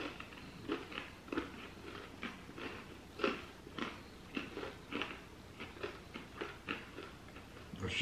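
Chewing of crispy candy-coated pretzels: irregular short crunches, a few a second, close to the mouth.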